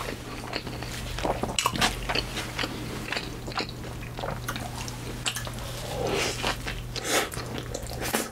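Close-miked chewing and biting of a Whopper burger dipped in cheese sauce: wet, squishy chewing with irregular sharp clicks and smacks from the mouth.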